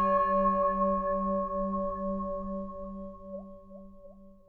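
A struck singing bowl ringing out and slowly dying away, its low tone wavering in a steady pulse as it fades.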